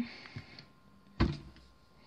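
A single sharp thump about a second in, with a faint click before it, over quiet room tone.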